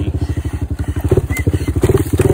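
Single-cylinder engine of a Honda TRX250EX quad running at low speed, its firing pulses coming evenly, with a few light clicks and rattles about a second in.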